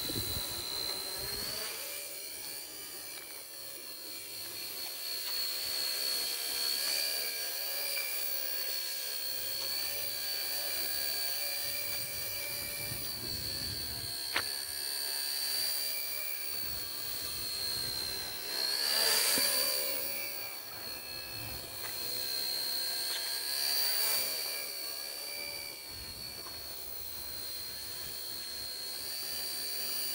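Homemade RC helicopter in flight: a steady high whine from its brushless main motor and rotor, the pitch wavering slightly as the throttle changes, and growing louder for a moment about two-thirds of the way through. One sharp click about halfway through.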